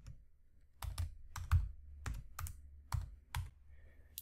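Computer keyboard typing: a short, irregular run of about nine keystrokes over three seconds, a brief terminal command being typed and entered.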